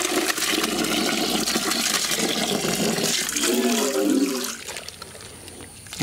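A stream of water pouring and splashing into a plastic bucket of ground wet wheat as the mash is tipped in from a steel pot. The rushing stops about four and a half seconds in, leaving a much quieter stretch.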